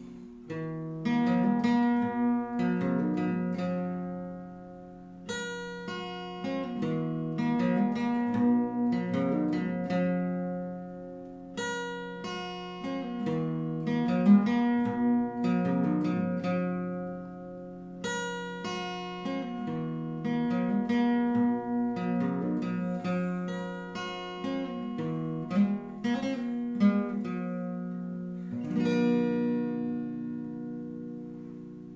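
Fingerpicked Epiphone jumbo acoustic guitar playing an instrumental passage, single plucked notes ringing over bass notes, in a phrase that repeats about every six seconds.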